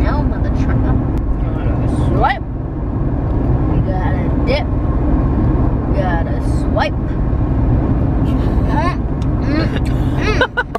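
Steady road and engine rumble inside the cabin of a moving Ford car.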